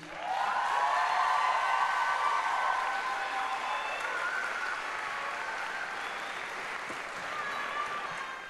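Audience applauding, with voices calling out over the clapping. It swells within the first second and slowly dies down.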